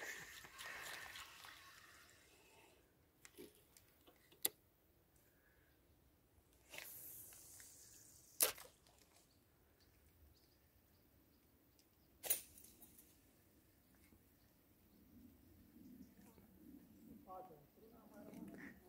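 Near silence broken by three isolated sharp clicks, about four seconds apart, with a brief soft hiss shortly before the second.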